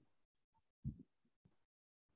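Near silence over the call, broken about a second in by two faint low thuds close together.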